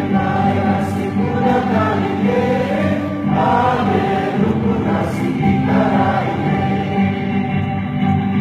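A large crowd singing together over steady music, the many voices blending in a big echoing hall.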